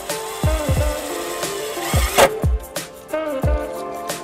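Background music with a beat: deep bass kicks that drop in pitch under held melody notes, with a swell just past the middle.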